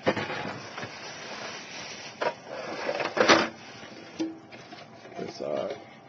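Rustling and clattering of plastic as LEGO baseplates and their packaging are handled, with a couple of sharp knocks, the loudest about three seconds in. The rustling dies down after about four seconds.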